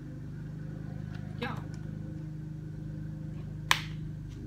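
A single sharp click about three and a half seconds in, the loudest sound, as a small leather card wallet is handled and closed. Under it runs a steady low mechanical hum.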